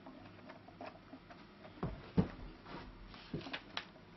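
Light handling noises of a hand working on a wooden lyre body: a few soft knocks and rubs, the loudest a low thump about two seconds in, then a quick run of small clicks near the end.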